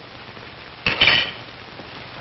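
Cutlery and dishes clinking briefly on a room-service tray, a short cluster of clinks about a second in, over a steady faint hiss.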